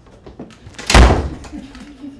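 A door slamming shut once, about a second in, with a short ring after the bang.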